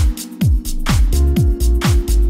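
Soulful house music from a DJ mix: a steady four-on-the-floor kick drum about twice a second under sustained chords and hi-hats, the bass dropping out briefly just after the start.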